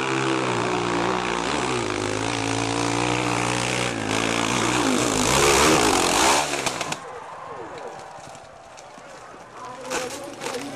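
Dirt bike engine running at steady revs, then revving higher and lower and loudest about six seconds in, before it drops away suddenly about seven seconds in.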